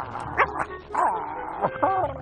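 Voice-acted cartoon dog noises from two puppies straining as they tug on a string held in their teeth: a run of short pitched cries, with a laugh near the end.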